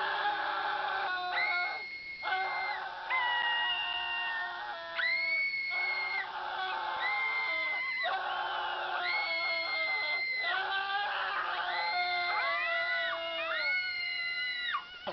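People screaming at each other in long, high, held screams, one after another and overlapping, most thickly near the end.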